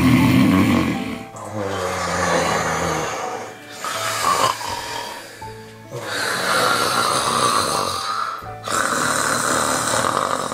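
A person snoring in long, drawn breaths, one about every two seconds, with music underneath.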